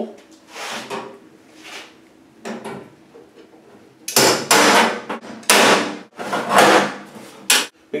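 Hammer striking a screwdriver held against the sheet-metal back panel of a range hood to punch out the vent knockout: a few soft taps, then a run of about six loud metal strikes from about halfway through.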